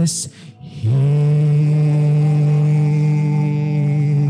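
A worship song being sung: after a brief breath, a voice slides up into a long held note just under a second in and sustains it steadily.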